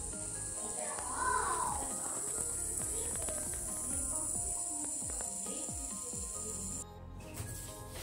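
Polycarbonate-and-aluminium hybrid yo-yo spinning at the end of its string during a spin test, its bearing giving a steady high hiss that cuts off about seven seconds in.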